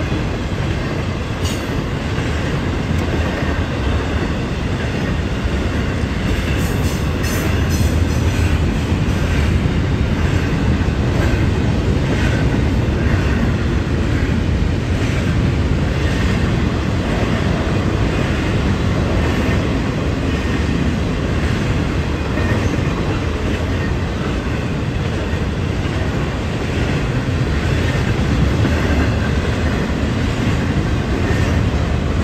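Florida East Coast Railway freight train's container cars rolling steadily past at close range: a continuous low rumble of steel wheels on the rails.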